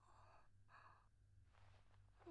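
Near silence, with three faint, short breaths through the nose and a steady low hum.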